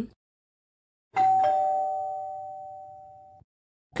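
A two-note ding-dong chime sound effect, a higher note then a lower one, starting about a second in, ringing out and fading for about two seconds before cutting off.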